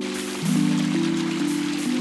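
Background music of slow, held chords, over the steady splashing of small fountain jets falling into a pool.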